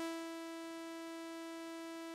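A single held note from the AudioRealism reDominator software synthesizer, a steady, bright tone rich in overtones. Just after the start it drops a little from its peak to a lower level and holds there: the envelope's decay settling into its sustain while the key is held.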